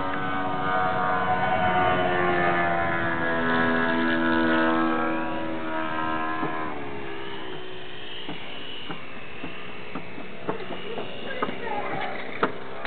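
Electric motor and propeller of a foam RC plane buzzing in flight, stepping up and down in pitch with the throttle, then throttled back and dying away about six and a half seconds in as it comes in to land. A few light clicks follow near the end.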